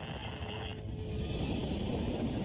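Background music over a patrol truck's engine pushing through deep snow, with a hissing rush of snow and tyre noise that swells about a second in.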